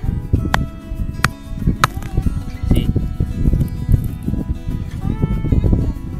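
Background acoustic guitar music. Over it come three sharp cracks in the first two seconds as a crumbly, compressed-sand volcanic stone is snapped apart by hand.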